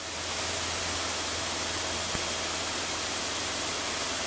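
Steady cabin noise of a single-engine light aircraft in flight: a low engine and propeller drone under airflow hiss, fading in over the first half second and then holding even.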